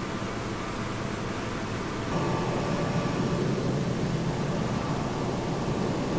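Steady jet aircraft noise on the tarmac: an even rushing with a faint whine, turning louder and lower about two seconds in.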